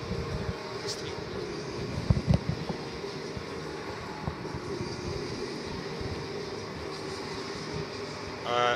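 Steady background noise of a large stadium, a low even rumble with a faint hum. A few soft knocks come near the start and about two seconds in.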